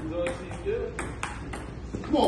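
Table tennis rally: the ball clicking off the paddles and the JOOLA table in a quick run of sharp hits.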